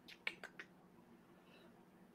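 Near silence with a few faint, short clicks in quick succession in the first half-second.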